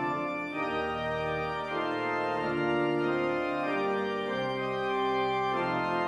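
Organ playing the offertory: slow, sustained chords that change about once a second.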